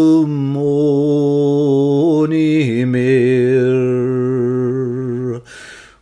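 Unaccompanied male voice singing a traditional Scots ballad in long, slowly held notes, the pitch stepping down about two and a half seconds in. The voice stops for a short pause near the end before the next line.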